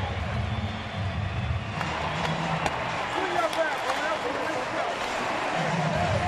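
Ballpark crowd cheering and shouting steadily, a mass of overlapping voices, as the home team takes the lead on a run scored at the plate.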